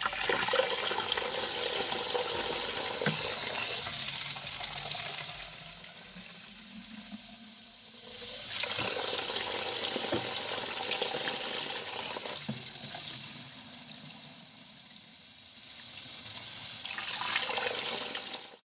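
Water running from a hose in a steady stream into a plastic wash bucket, splashing onto the grit guard at the bottom as the bucket fills. The rush swells and eases twice.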